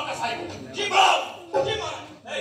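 Actors' loud shouted voices on stage, with one strong cry about a second in.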